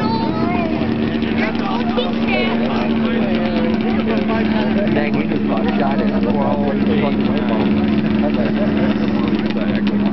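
Snowmobile engine running at a steady, unchanging pitch throughout, with people talking over it.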